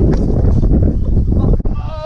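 Skateboard fall on concrete, filmed on a body-worn action camera: loud rumbling with a few knocks as the rider tumbles and the mic is buffeted. A short vocal cry comes near the end.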